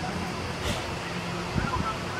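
Open-air football pitch ambience: faint, distant shouts and calls from young players over a steady background hiss and low hum.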